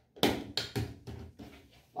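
Fabric being handled and flipped over on a cutting mat: a run of soft rustles and taps, loudest about a quarter second in and fading toward the end.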